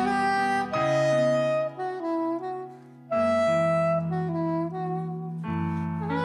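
A soprano saxophone plays a lyrical jazz melody in long held notes over sustained chords from a Nord Stage electric piano. The chords change about three times, and there is a short quiet gap between phrases near the middle.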